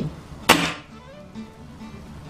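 .22 air rifle firing a single shot about half a second in, a sharp crack with a short decaying tail.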